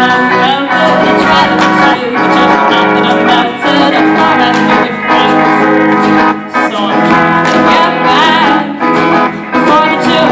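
Live ensemble of many acoustic and electric guitars playing an upbeat pop song together, strumming a steady rhythm.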